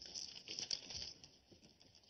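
Faint rustling and crinkling as a child handles a cardboard flower on a stick and presses it into a ball of modelling clay. A few light clicks come in the first second, then it goes quieter.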